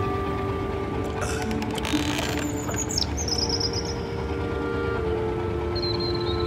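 Soft music of sustained notes, with a seabird calling overhead: a high, warbling cry that falls slightly, about three seconds in, and a shorter call near the end. A brief rush of noise comes about two seconds in.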